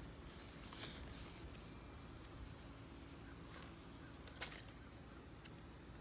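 Quiet steady background rumble with two faint clicks, one about a second in and a sharper one after four seconds.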